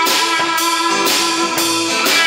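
Live rock band playing an instrumental passage: drum kit keeping a steady beat of about two strikes a second under bass guitar, strummed acoustic guitar and electric guitar.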